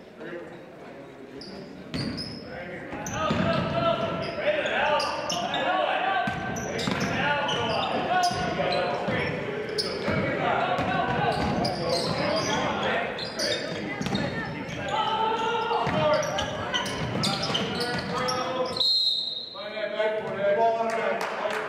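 Gym sounds of a high school basketball game in a large, echoing hall: many overlapping voices from players and spectators, with a ball bouncing on the hardwood. Near the end a referee's whistle sounds once, a steady high blast about a second long, stopping play.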